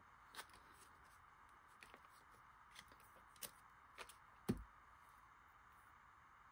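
Near silence with a few faint ticks and rustles of paper and washi tape being handled, and a soft knock on the desk about four and a half seconds in.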